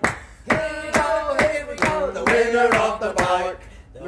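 A few men's voices singing a wordless suspense tune together, with rhythmic hand claps about two to three a second. The singing breaks off briefly just after the start and again near the end.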